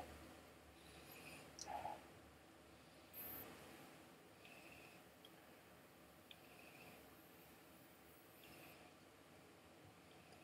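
Near silence: room tone with a few faint, brief mouth and glass sounds of someone sipping whisky, the clearest one about three seconds in.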